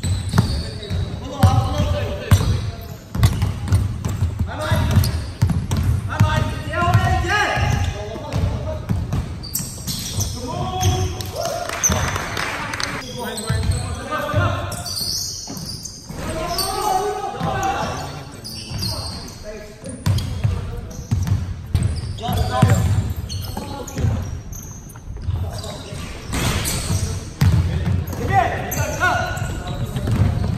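Basketball bouncing repeatedly on a hardwood gym floor during a full-court pickup game, with players' voices calling out between and over the bounces.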